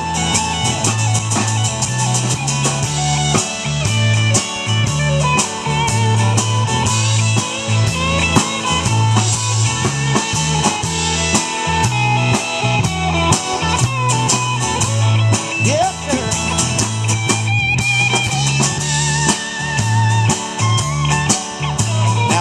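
Live country band playing an instrumental outro: electric and acoustic guitars over a steady bass guitar line and a drum kit keeping a regular beat.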